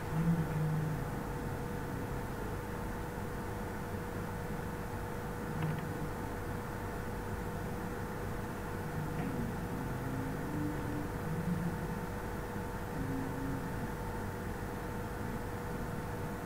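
Steady background hum and hiss with a faint constant tone, broken only by a few faint low sounds.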